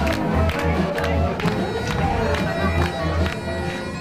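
Live music from musicians playing for a crowd: sustained reedy tones over a steady beat of about three hits a second, with the crowd clapping along.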